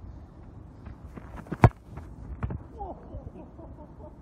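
Quick running footsteps on grass, then a sharp, loud kick of a soccer ball about one and a half seconds in, followed by a softer thump about a second later.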